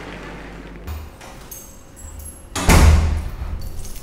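A door shutting with a heavy thud about two and a half seconds in, over a low room hum.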